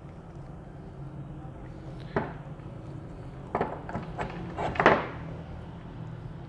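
Metal parts of a hydraulic gear pump, its gears, shaft and bushing blocks, knocking and clicking against the pump housing as they are fitted in by hand: one sharp knock about two seconds in, then a few more clicks and knocks shortly after three and a half and near five seconds.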